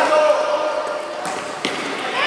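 Futsal ball struck and bouncing on a wooden court, two sharp knocks in the second half, with voices calling over the play.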